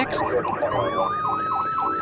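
Emergency vehicle sirens: one yelping, its pitch sweeping up and down about five times a second, while a second siren winds up about half a second in and holds a steady high note.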